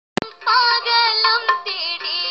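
A boy singing into a microphone, played back through small computer speakers so the voice sounds thin and tinny with no bass. A short click at the very start before the singing comes in.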